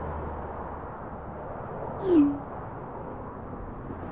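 Steady outdoor background noise, broken about two seconds in by one short, loud sound that falls in pitch.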